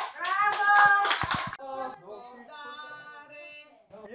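A short burst of hand clapping from a small audience in a small room, with a voice calling out over it, lasting about a second and a half. Then a quieter voice carries on until the sound cuts off just before the end.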